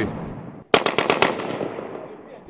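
A short burst of automatic gunfire, about seven rapid shots in just over half a second, starting under a second in, followed by a long echo that fades away.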